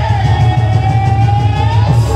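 Qawwali singing: one long held note that rises near the end, over harmonium and a pulsing drum beat.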